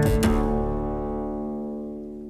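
Cello played pizzicato: the last plucked notes of a passage, struck right at the start, ring on as several sustained pitches and fade slowly away.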